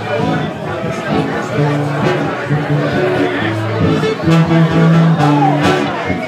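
Live band playing, with low held notes from a brass instrument such as a trombone, under the chatter of a bar crowd talking over the music.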